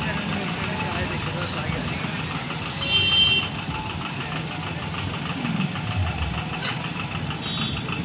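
Motorcycle engines running as a group of motorbikes rides slowly past, with voices mixed in. A brief louder sound with a high-pitched tone comes about three seconds in.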